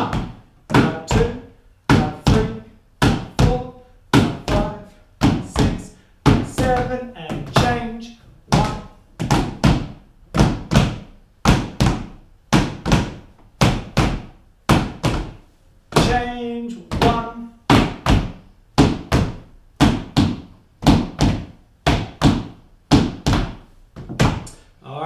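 Shoes tapping the ball of the foot on a wooden floor in a steady swung rhythm, roughly two taps a second: a beginner tap drill of two hits per beat.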